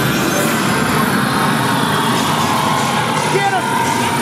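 Loud, steady din inside a dark ride: the ride vehicle running along its track under the attraction's sound effects and voices, with a few short gliding tones.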